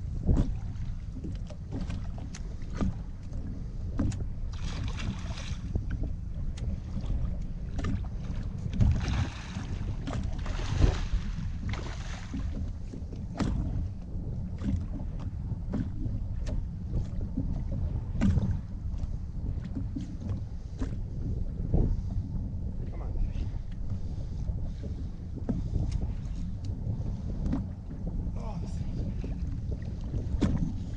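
Wind rumbling on the microphone over water lapping against the boat hull, with scattered knocks and a few bursts of splashing, the strongest about nine to twelve seconds in.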